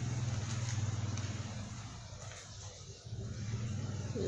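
Low, steady motor hum with a fine pulse, like a running engine, strongest for the first two seconds, then fading and returning more faintly near the end.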